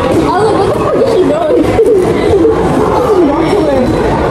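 Loud chatter of several young voices talking over each other, with raised, calling voices among them.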